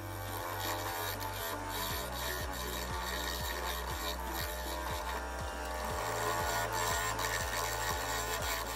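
Background music with a steady bass line, mixed with a turning tool cutting into a walnut bowl blank spinning on a wood lathe: a continuous scraping hiss of the cut.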